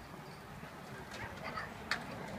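A dog barking in a few short bursts, the sharpest one near the end, over a low murmur of background chatter.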